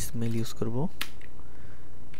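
A man's voice speaks for under a second, then a single sharp click sounds about a second in from the computer being operated.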